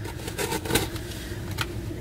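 Cardboard shipping box being handled and its packing tape scraped open with a small tool: irregular small clicks and scrapes, one slightly louder about midway.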